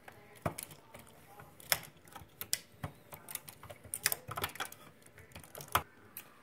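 Irregular sharp clicks and light knocks of a hand screwdriver working the screws out of an incubator's plastic housing, with the plastic parts being handled as the electronics box comes loose.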